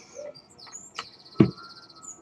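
A bird singing, with short high chirps and then a fast pulsed trill from about halfway through. A single short knock comes about two-thirds of the way in.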